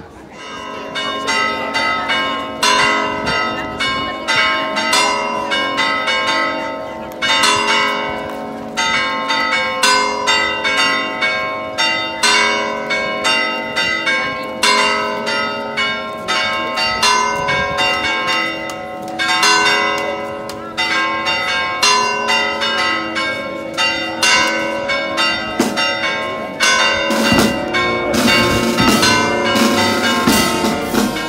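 Church bells pealing, a fast, continuous run of strikes with long ringing tones, starting about half a second in and easing briefly twice: a festive peal rung as the procession sets out.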